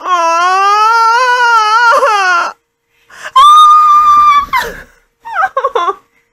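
A woman squealing with delight: a long wavering squeal, then a higher, steadily held squeal, then short broken giggles near the end.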